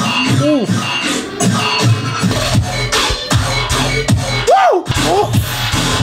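Heavy dubstep track with growling, brostep-style bass whose pitch sweeps up and down in arcs, with a short break a little before the end.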